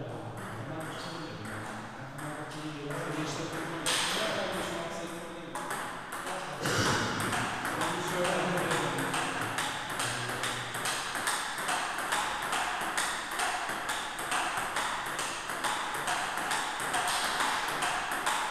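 Celluloid-type table tennis ball clicking back and forth off the rubber bats and the tabletop in a steady forehand warm-up rally, a regular run of sharp clicks several times a second.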